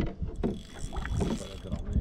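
Fishing reel being worked as a hooked fish is played beside the boat: irregular mechanical clicking and ratcheting, with a sharp knock right at the start.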